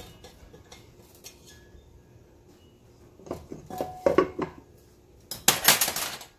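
Metal spoon and kitchen containers clinking against a glass mixing bowl as a teaspoon of salt is measured into flour: a few clinks in the middle and a quick run of sharp, loud clinks near the end.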